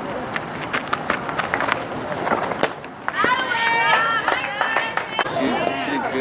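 Outdoor softball-field sound: high young voices shouting and chanting, several at once about three seconds in, with scattered sharp clicks.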